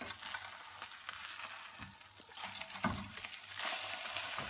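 Foil-wrapped fish sizzling on a hot, dry frying pan, with the foil rustling and a metal spatula knocking against the pan as the packet is turned over. The loudest knock comes about three seconds in.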